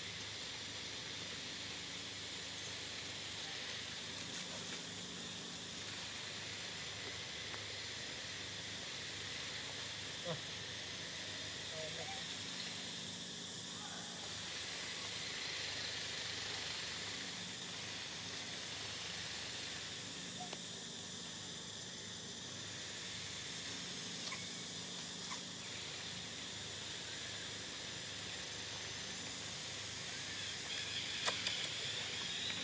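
Steady chorus of insects chirring, holding at an even pitch and level, with a faint low hum underneath and a few soft clicks.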